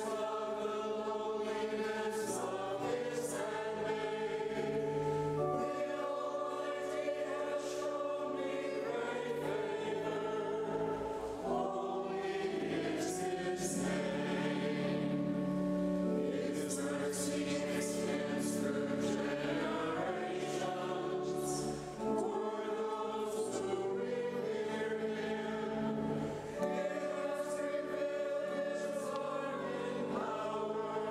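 A choir singing a communion hymn in the cathedral, in slow held notes and chords that change every second or two.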